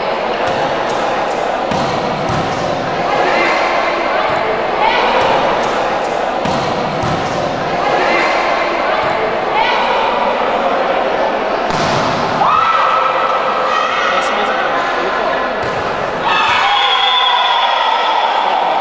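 Volleyball rally in a gymnasium: the ball being struck with sharp smacks, the hardest about twelve seconds in, among players' shouts and spectators' voices.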